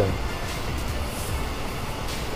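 Steady low rumble and hiss of background noise, with no speech.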